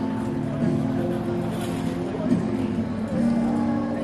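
Acoustic guitar played through a small portable amplifier in a wordless instrumental passage, with long held notes at a few pitches and a brief bend in pitch about halfway through.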